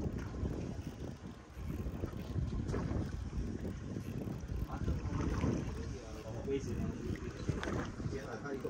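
Wind buffeting the microphone aboard a boat at sea, with water moving against the hull.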